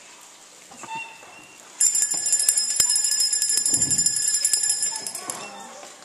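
A bright, high jingling rattle, like shaken metal bells, starts suddenly about two seconds in, holds steady for about three and a half seconds, then cuts off.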